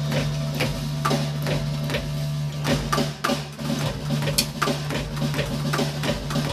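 Electronic drum kit played with sticks, its pads triggering synthesizer sounds: irregular sharp hits, several a second, over a steady low synth tone.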